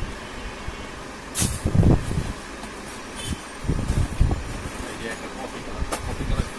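Cardboard saree boxes being handled: a sharp knock about a second and a half in, then dull bumps and rustling as boxes and lids are lifted and set down, again around four seconds in.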